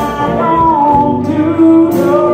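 Live blues band playing: electric guitars, bass and drums under a woman singing lead, with cymbal hits at the start and near the end.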